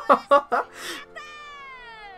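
Anime soundtrack: a short burst of voice, then a long pitched squeal-like tone that falls in pitch for about a second over a steady held note.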